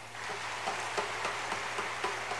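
Audience applause starting a moment in: scattered claps quickly filling in to dense, steady clapping.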